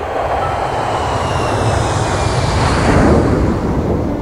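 Jet airliner passing overhead: a rush of engine noise that swells to a peak about three seconds in, with a faint falling whine.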